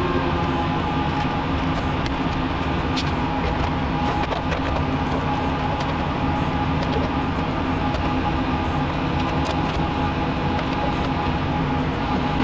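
A steady, even drone with several steady tones held throughout and a few faint clicks.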